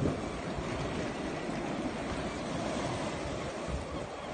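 Sea surf washing over a rocky shore, heard as a steady rush of noise.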